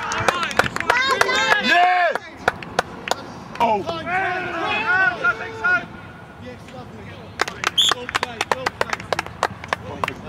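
Footballers on an open pitch shouting and cheering at a goal, in long rising-and-falling yells. About seven seconds in, the yells give way to a rapid run of sharp clicks and knocks.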